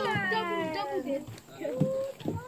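A person's high-pitched voice sliding steadily down in pitch over about a second, a drawn-out meow-like call, followed by a few shorter bits of voice.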